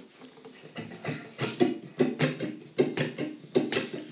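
Acoustic guitar strummed softly in a steady rhythmic pattern, strokes coming about two to three a second from about a second in.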